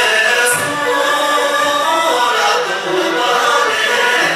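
A group of voices singing a Tibetan folk song together over a musical accompaniment, with long held notes.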